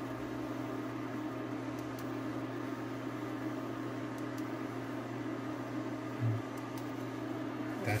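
Steady low mechanical hum of a running appliance or fan, with one brief low bump about six seconds in.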